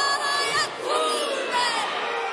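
A haka chanted in te reo Māori: a woman's voice shouts the calls, held and then falling in pitch, with other voices chanting along.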